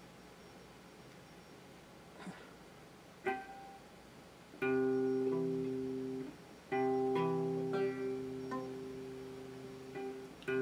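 Electric guitar chord practice: after a few quiet seconds and a single plucked note, a chord is strummed and rings for about a second and a half, stops, then is strummed again and left ringing for about three seconds while it slowly dies away.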